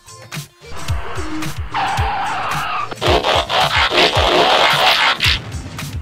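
Background music with a steady beat, with cartoon-style car sound effects laid over it: tyres skidding, coming in about a second in and loudest from about three seconds in until shortly before the end.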